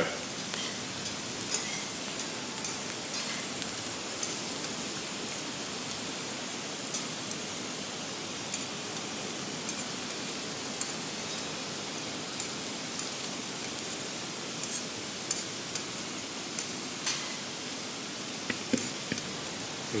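Thin potato slices frying in olive oil on a stainless teppanyaki griddle held at 180 °C: a steady sizzle with scattered small crackles.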